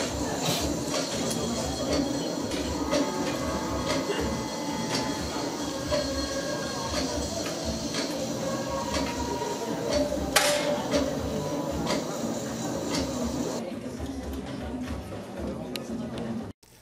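Steady background noise of an indoor shooting hall with a faint murmur of voices, and one sharp report about ten seconds in from a 10 m air rifle being fired.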